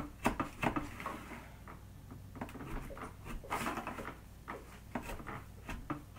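Knife cutting down into a cheesecake in a foil pie tin: scattered small clicks and short scrapes as the blade goes through the cake and touches the tin.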